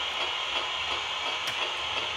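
Ghost box (spirit box) radio sweeping through stations, giving out a steady hiss of static, with a single sharp click about one and a half seconds in.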